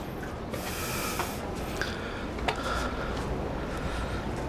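Hydraulic swimming stairs folding out from a motor yacht's side hull: a steady low mechanical hum with a few faint clicks, heard over wind and water noise.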